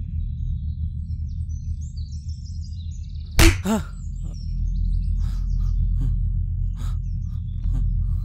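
A single sharp slap across the face about three and a half seconds in, followed by a brief pained cry, over a low droning music bed with faint bird chirps.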